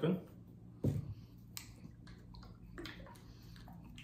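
Quiet handling sounds at a table: one sharp knock about a second in, then a few faint clicks.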